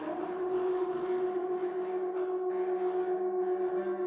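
Metal contrabass clarinet and saxhorn in a free improvisation, holding long steady notes together: one strong held tone over a quieter, lower one.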